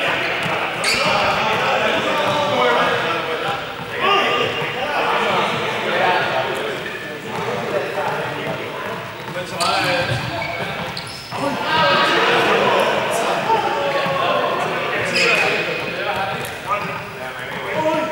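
A ball bouncing again and again on the hard floor of a large, echoing sports hall, with several people's voices talking and calling over it.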